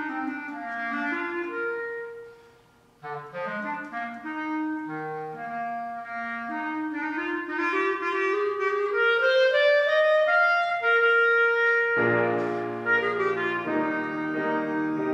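Clarinet playing a solo melody, broken by a brief silence about three seconds in, after which the line resumes and climbs steadily upward. Piano chords join near the end.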